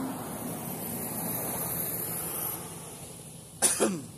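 Street traffic noise that fades out about three seconds in, then a man coughs once, briefly and loudly, near the end.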